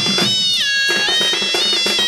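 Sambalpuri folk music: a shrill double-reed pipe (muhuri) plays a gliding, ornamented melody over a fast drum rhythm. About half a second in the drums drop out for a moment while the pipe slides down to a held note, then the drumming comes back.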